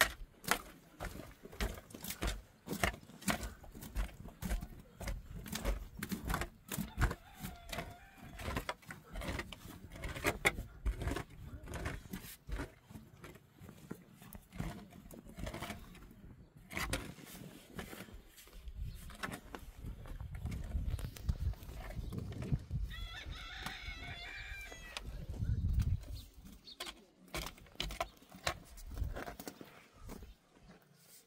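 Shovel blade repeatedly striking and scraping into stony soil while digging a pit, about one to two strikes a second. A chicken calls briefly a little past the middle.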